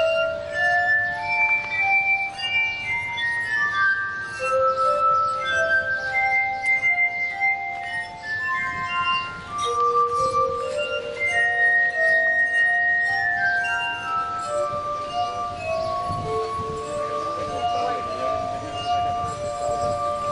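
Glass harp: stemmed wine glasses tuned with liquid, rims rubbed by fingertips, ringing in sustained pure tones. The notes step through a melody with two or three sounding together.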